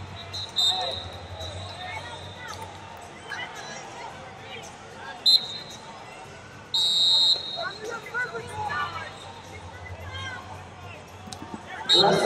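Wrestling referee's pea whistle blowing in short, shrill blasts: a short one near the start, a blip about five seconds in, and a longer, trilling, louder blast about seven seconds in as the bout restarts from neutral. Voices of coaches and spectators chatter and shout in the background.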